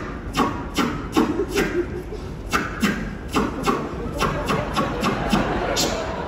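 A man making rhythmic mouth sound effects, beatbox-style: a quick run of clicks and pops, about two to three a second.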